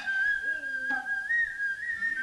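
Noh hayashi music: the nōkan flute holds a high note that lifts briefly about halfway through, with sharp kotsuzumi shoulder-drum strikes at the start and about a second in, and a drummer's drawn-out vocal call underneath.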